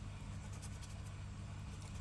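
Faint scraping of a scratch-off lottery card's coating being rubbed away with a scratcher, over a steady low hum.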